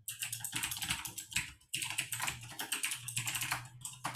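Fast typing on a computer keyboard, a quick run of key clicks with a brief pause a little before halfway.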